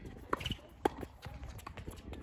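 Tennis ball struck by rackets and bouncing on the court during a doubles rally: a few sharp pops, the loudest just under a second in.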